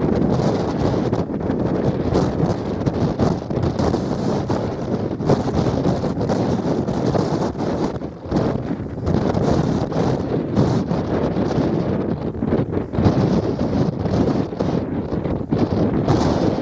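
Strong wind buffeting the camera microphone: a loud, uneven rumbling noise that rises and falls with the gusts, dipping briefly about eight seconds in and again near thirteen seconds.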